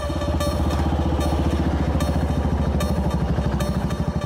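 Motorcycle engine running with a fast, even thudding beat, starting abruptly; the beat slows slightly near the end as the bike draws up and slows.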